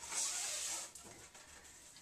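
Ribbon drawn through the punched holes of a folded paper program, with the paper rustling as it is handled: a brief hissing rustle in the first second, then faint handling noise.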